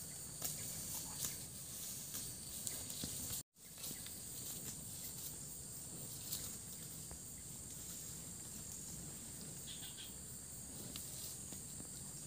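A steady high-pitched chorus of insects, with scattered faint clicks; the sound cuts out completely for a moment about three and a half seconds in.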